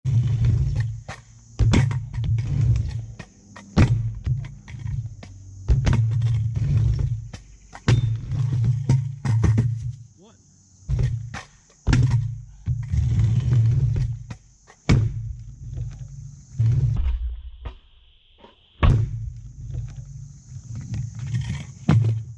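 Stunt scooter wheels rolling on concrete ramps, one of them a plastic back wheel, in a run of rumbling passes about a second long. The passes are broken by sharp clacks and knocks of landings and of the scooter hitting the concrete.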